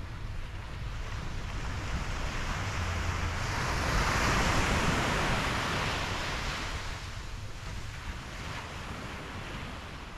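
Sea surf breaking on a sandy beach: one wave's wash swells to its loudest about four seconds in, then fades as it runs up the shore.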